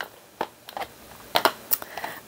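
Handling of a paper journal card on a cutting mat: a few scattered light taps and clicks, several close together in the second half.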